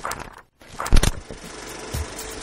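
Intro sound design over a logo card: a short rushing burst, then a loud, heavy hit about a second in as a steady music bed begins.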